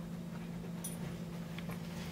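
A steady low hum, with a few faint short clicks and ticks about a second in.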